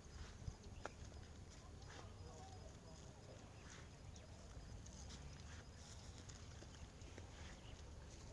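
Near silence: a faint low rumble of outdoor background with a few faint, scattered clicks.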